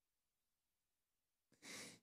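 Near silence, then near the end one short, faint in-breath into a handheld microphone, taken just before speaking.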